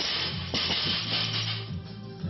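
Background music, with a rushing rattle for about a second and a half from a just-dropped loaded barbell with iron plates bouncing and rolling on the rubber gym floor.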